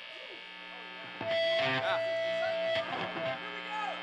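Electric guitars ringing through amplifiers on a rock stage, with steady amp hum and a long held guitar tone that gets louder about a second in, and a few shouted voices.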